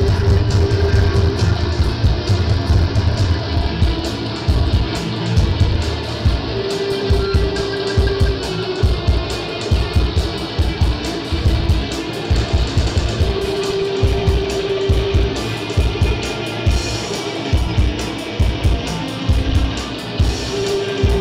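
Instrumental stoner-doom rock played live: electric guitar and bass guitar with drums, loud and continuous. A long held note sounds about every six to seven seconds.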